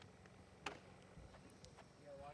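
Near silence: faint outdoor background with one sharp click about two-thirds of a second in and a few fainter ticks after it.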